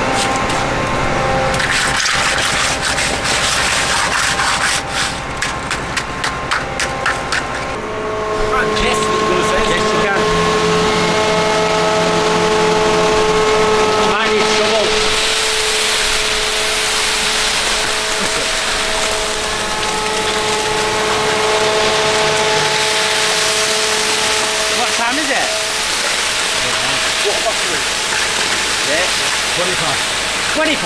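Concrete mixer truck running with its engine held at a steady raised speed, its pitch stepping up and down a few times, while wet concrete rushes down the chute into a pothole from about halfway. Knocks and scraping of tools in the concrete fill the first several seconds.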